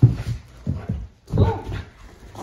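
Greyhound making several short low grunting sounds and one brief higher whine while playing excitedly with a toy.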